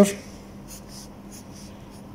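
Pencil scratching on paper as a line is drawn, a few short faint strokes.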